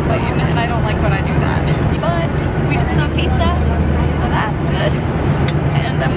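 Steady low drone inside an airliner cabin, with people talking over it.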